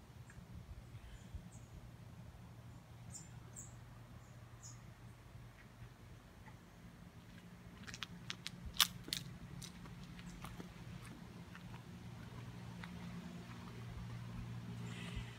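Faint outdoor ambience with a steady low hum, a few short high chirps in the first few seconds, and a cluster of sharp clicks and ticks about eight to ten seconds in.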